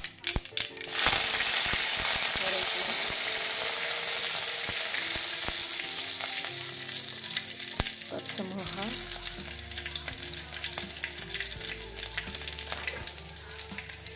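Hot oil in a steel kadai crackling with sharp pops as seeds fry. About a second in, curry leaves drop into the oil and set off a loud, steady sizzle, which slowly eases as sliced green chillies are added.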